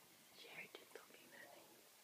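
Near silence with a brief, faint whisper about half a second in, broken by a couple of soft clicks.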